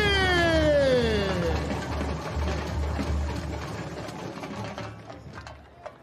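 Samba school bateria playing a samba beat, with a steady pulse of deep surdo drums. At the start a voice holds one long note that slides down in pitch. The drumming then fades out gradually.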